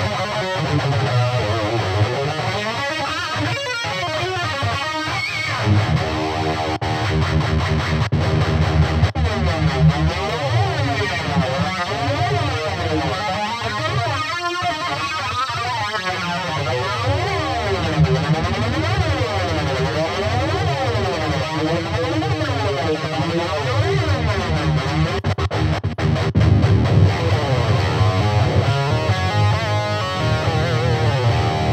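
Electric guitar played through a Peavey Vypyr 15 digital modeling combo amp: a continuous passage of picked notes, with a modulation effect making the tone sweep and waver.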